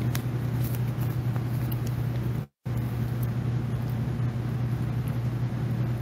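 Steady low hum over a background hiss, broken by a brief total dropout about two and a half seconds in.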